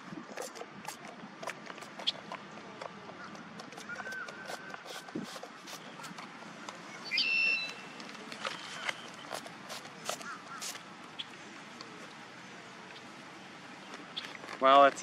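Scattered faint clicks and knocks, with a brief high bird chirp about seven seconds in and a couple of shorter high notes around it.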